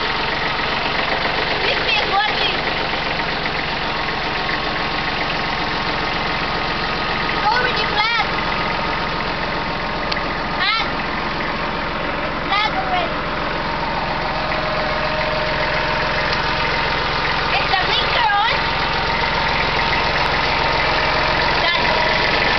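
Kubota B21 compact tractor's three-cylinder diesel engine running steadily, with a few short voice sounds heard over it.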